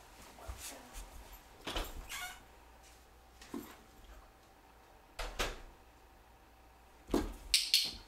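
A few short, scattered knocks and scuffs from a dog pawing and pushing a small cardboard box on carpet, spaced about a second or two apart.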